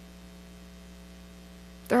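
Steady electrical mains hum during a pause in speech: a low, even hum with a ladder of faint steady tones above it. A woman's voice starts again right at the end.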